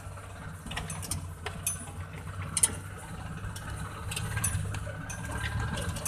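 Multicab's engine running with a steady low rumble, with scattered clicks and rattles from the vehicle's body during the ride.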